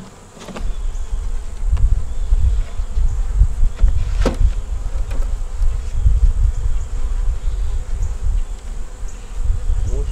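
Honeybees buzzing around an opened nuc hive, under a heavy, gusting rumble on the microphone, with a single knock about four seconds in.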